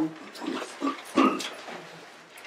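A person coughing: a few short coughs, the loudest about a second in.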